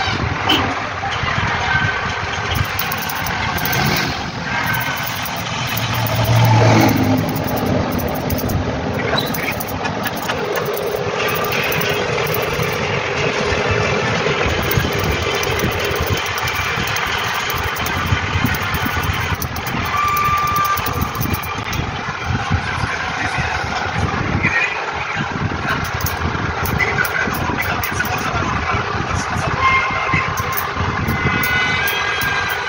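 Street traffic: motor vehicles running by, with a louder pass about six to seven seconds in whose pitch falls as it goes.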